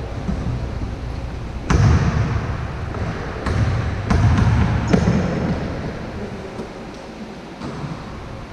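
A basketball bouncing on a court: several separate, irregularly spaced bounces, the loudest about two seconds and five seconds in, over a low rumbling background.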